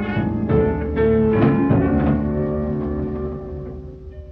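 Closing bars of a slow blues record with no singing: the band plays a last phrase, then settles on a held final chord that dies away toward the end.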